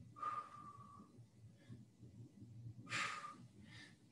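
A man breathing audibly while he holds a stretch: two faint exhales about two seconds apart, each with a slight whistle.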